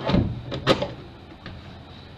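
Stainless steel bowl of an electric stand mixer being handled and fitted onto the machine: clattering metal clunks, the sharpest and loudest well under a second in.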